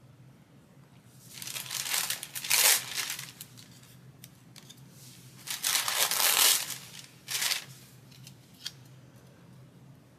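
A thin wrapper sheet from a sticker pack crinkling as it is handled. It comes in two crackly bursts of about two seconds each and a brief third one.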